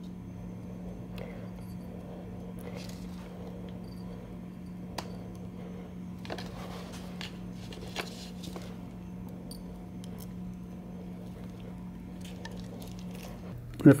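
Faint small clicks and soft rustling as steel needle rollers are picked up with greased, gloved fingers and pressed into a countergear bore, over a steady low hum.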